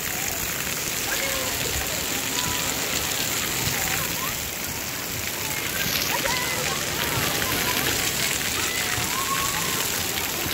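Water pouring and spraying from a splash-pad play structure, a steady splattering rush like heavy rain, with faint children's voices and shouts mixed in.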